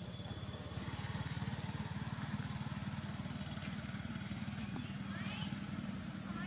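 Small motorcycle engine idling steadily with an even low pulsing. A few short high squeaks from a baby macaque come near the end.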